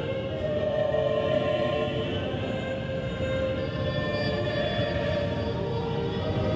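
Slow church music of long held chords, the chord changing about half a second in and again near the end.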